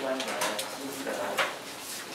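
Speech only: a man talking steadily into a conference microphone in a meeting room.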